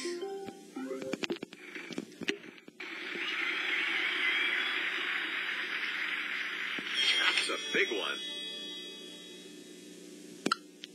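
Wheel of Fortune video game sound effects. A few clicks and short electronic tones come first. About three seconds in, a steady rush of sound begins, lasts about six seconds and slowly fades.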